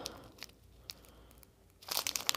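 Small plastic bag of black diamond-painting drills being handled: mostly quiet with a couple of faint ticks, then crinkling and crackling of the bag starting near the end.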